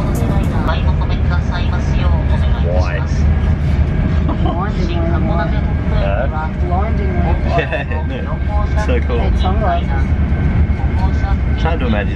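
A train running, heard from inside the passenger cabin: a steady low rumble, with indistinct voices over it.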